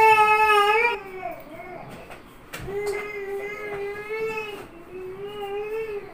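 An infant crying in long, steady wails. The loudest comes right at the start, then two more follow, each a second or two long.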